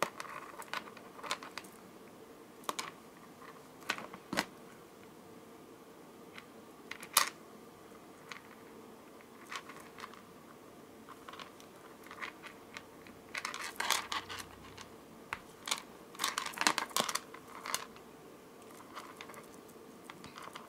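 Scattered light clicks and rustles of a strung bead necklace and its thread being handled while knots are tied, with two busier flurries of clicks past the middle. A faint steady hum runs underneath.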